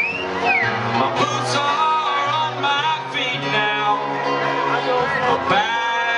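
A man singing a folk song live to his own banjo accompaniment. His voice swoops up and back down right at the start.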